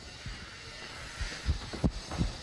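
Dull low thumps and knocks of work inside a house under renovation, several in the second half with one sharper click, over a steady hiss.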